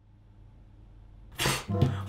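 A faint steady hum, then about one and a half seconds in a single short, sharp puff of breath from a man.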